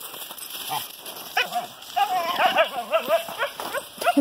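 A dog vocalizing in a run of high, wavering whines that rise and fall quickly, one short call about a second and a half in and then a longer chattering stretch, a talkative dog 'chatting'.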